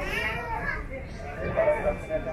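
Background chatter of passengers' voices, a child's voice among them, with low steady noise underneath.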